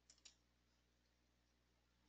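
Near silence: faint room tone with a low steady hum, and two faint clicks in quick succession just after the start.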